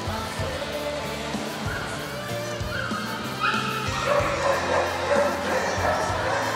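A dog barking repeatedly, heard over music.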